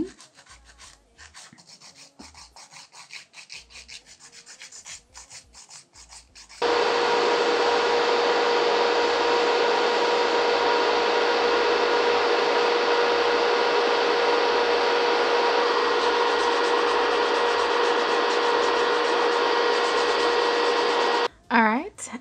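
Short scratchy strokes of a file on cured gel nails. About six seconds in, an electric nail drill starts filing and runs steadily with an even hum until it cuts off just before the end, shaping the patty gel nails.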